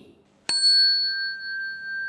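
A small Buddhist ritual bell struck once, about half a second in, ringing with two clear high tones that fade away within two seconds. It is the cue for the assembly to rise.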